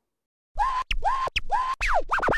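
Hip-hop outro music starts about half a second in: turntable scratches sweeping quickly up and down in pitch over a deep bass.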